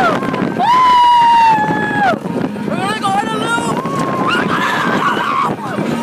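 Rider on an amusement park ride screaming and laughing, with one long held scream in the first two seconds and shorter wavering cries after it, over the rumble of the ride and wind on the microphone.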